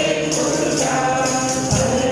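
Devotional group singing accompanied by a harmonium, with a tambourine's jingles shaken in a steady beat about twice a second. There is a low thump near the end.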